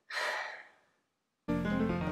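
A woman's short breathy sigh, then about one and a half seconds in background music starts, with a low bass line and plucked notes.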